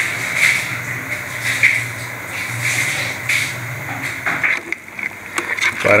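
Quail curry gravy bubbling and sizzling in a large aluminium pot on the heat, an uneven hiss with small pops over a steady low hum.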